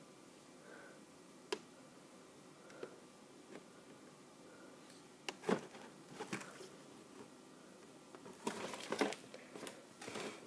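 Faint room tone broken by a few scattered taps and knocks as a cardboard toy box is handled and set down on a cloth-covered table, with a short burst of rustling handling noise near the end.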